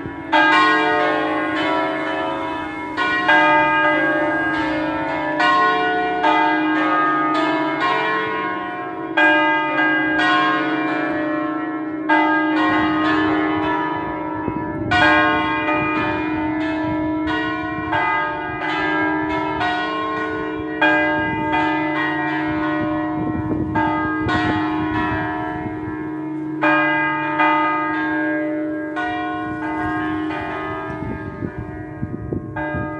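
Four church bells from a five-bell set in B (Si2) swinging and ringing together in the Italian 'a distesa' manner. Their strokes fall irregularly, about one a second, over a steady lingering hum. This is a festive ringing that calls to Mass.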